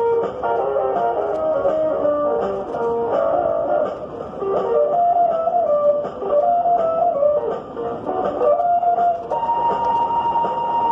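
Guitar music: a melody of picked notes moving up and down, with a single steady tone coming in and held near the end.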